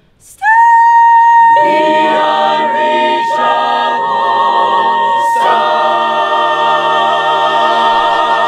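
Mixed a cappella choir singing. After a brief pause a single high note comes in and is held, other voice parts join beneath it about a second later, and the chord swells again past the middle.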